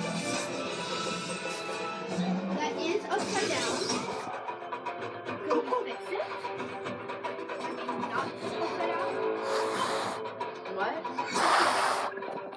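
Background music with soft, indistinct voices, as from a television playing in the room, and a short rush of noise near the end.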